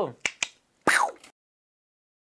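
Two quick clicks, then a louder, sharper snap about a second in, carrying a brief falling tone, after which the sound stops.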